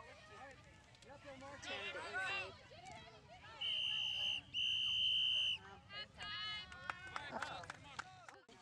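Referee's whistle blown in two long, steady blasts of about a second each, with a short break between them, over children's and spectators' voices.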